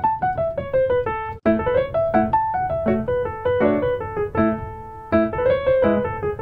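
Solo piano playing a quick melodic line of single notes over lower bass notes. The sound cuts out for an instant about one and a half seconds in.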